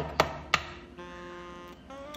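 Two sharp taps about a third of a second apart, then a held chord of background music.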